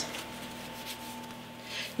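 Quiet room tone with a faint steady hum, and soft handling noises of hands working sticky bread dough; a brief soft hiss near the end.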